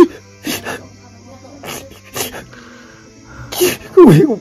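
A man crying: short, breathy sobs and sniffs, about five or six of them a second or so apart, over a faint steady low hum.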